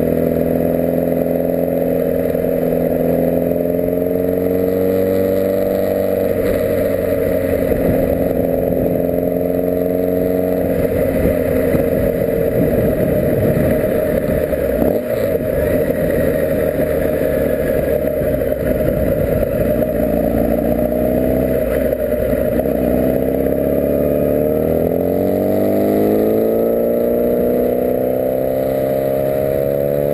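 Kawasaki ZX-6R inline-four motorcycle engine heard onboard while riding. Its pitch falls slowly as the bike eases off through the town and blurs into rougher road and wind noise midway, then rises steadily near the end as it accelerates up through the revs.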